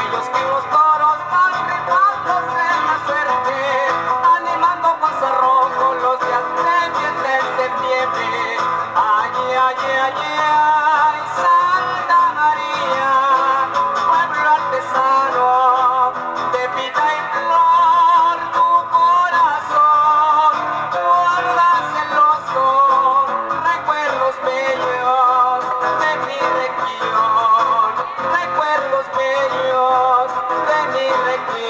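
A live duo performing a chilena: two acoustic guitars strumming and picking a lively rhythm, with male voices singing over them.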